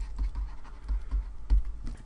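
A pen stylus writing on a tablet: a run of small irregular clicks and taps with faint scratching, and soft low knocks underneath.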